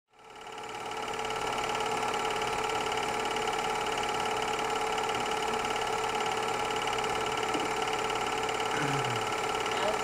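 Super 8 film projector running: a steady mechanical whir that fades in over the first second and holds at an even level.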